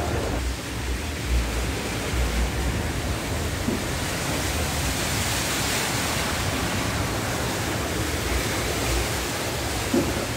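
Steady rushing of muddy floodwater flowing across a yard and floor, with occasional low rumbles.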